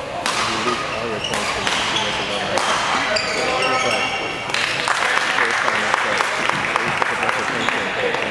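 Badminton rally: sharp racket strikes on the shuttlecock, three of them in the first few seconds, with squeaks from players' shoes. About halfway through, spectators start applauding, and the clapping carries on.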